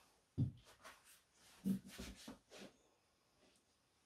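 Handling knocks from a BMW rear differential housing and a plastic drain tub being moved on a rubber mat: a sharp thump about half a second in, another a little before two seconds, then a few lighter knocks and scrapes before it goes quiet.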